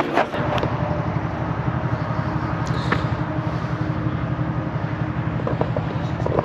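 A motor vehicle's engine running steadily, with a fast, even low throb.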